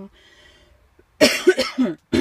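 A woman coughing, a short, loud fit of several coughs beginning about a second in.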